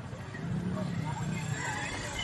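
Motorcycle engine running at low revs as the bike creeps toward a plank ramp, with voices calling over it.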